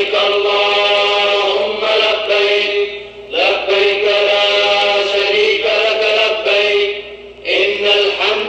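A voice chanting an Islamic devotional chant in long, held melodic phrases, with short breaths about three and seven seconds in.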